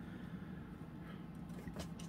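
Faint handling of a plastic hair dryer concentrator nozzle being worked off and on the barrel, with a few light clicks near the end, over a low steady room hum. The dryer itself is not running.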